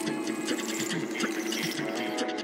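A quiet, stripped-down stretch of a DJ's electronic music over the PA: rapid, even, mechanical-sounding ticks over a held low note, with a thin high tone slowly falling in pitch.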